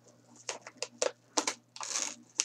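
A mailing envelope being opened by hand: a run of sharp crinkles and crackles, then a longer tearing rustle near the end.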